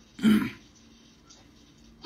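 A person clearing their throat once, briefly, about a quarter second in, followed by a low background with a faint steady hum.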